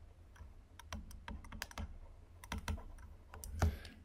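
Stylus tapping and scratching on a tablet as a word is handwritten: a string of faint, irregular clicks.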